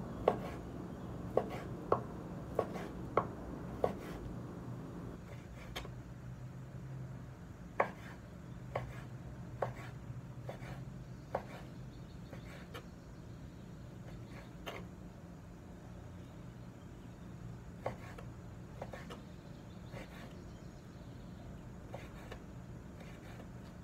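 Chef's knife slicing raw beef on a wooden cutting board, the blade tapping the board: a quick, even run of taps about every half second at first, then sparser, fainter taps.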